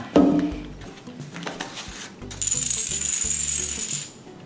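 Background music with a steady, high, shaker-like rattle that comes in a little past halfway and cuts off abruptly at the end.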